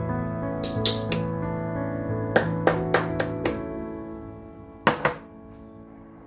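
Soft piano background music, with about ten sharp clicks in three quick groups as cubes of kohlrabi and carrot are dropped into a glass jar and knock against the glass.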